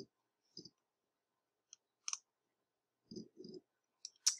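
Faint computer mouse clicks scattered through near silence: one about half a second in, a sharper click around two seconds, and a quick pair near the end.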